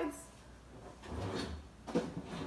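Kitchen handling and movement noises: a low shuffling rumble about halfway through, then one sharp knock just before the end.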